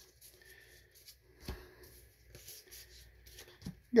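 Magic: The Gathering cards being flipped through by hand, card sliding over card in faint soft rustles and small ticks, with one firmer tap about one and a half seconds in.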